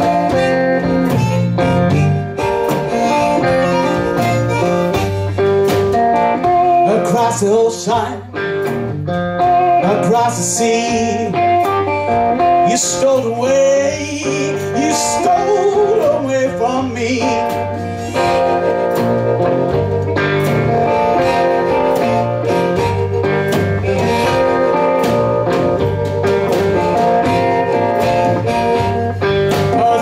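Live hill country blues on guitar and drum kit: a repeating guitar riff over a steady drum beat. Around the middle a lead line wavers and bends in pitch.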